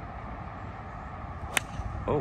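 A golf club striking a teed golf ball: a single sharp crack about one and a half seconds in, over a steady low outdoor background.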